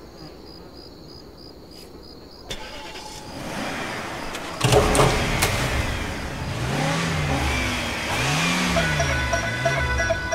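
Faint insects chirping in a steady pulsing rhythm. About four and a half seconds in, car engines start with a loud burst and then rev again and again, each rev rising and falling in pitch. Music comes in under the revs near the end.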